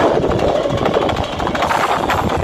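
Loud live folk-band music from a stage, dominated by fast, dense percussion, with no clear singing in this stretch.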